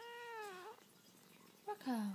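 A domestic cat meowing once, a call of about three-quarters of a second that drops slightly in pitch. Near the end comes a shorter, louder low voice sound that falls in pitch.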